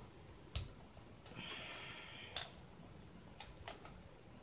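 Faint handling noise of a plastic tripod tilt head being adjusted: a few sharp clicks spread out, with a short soft hiss in the middle.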